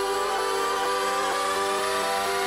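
Electronic dance music in a dubstep remix, in a bare build-up: a sustained synth chord with one synth line slowly rising in pitch, with no beat or bass under it.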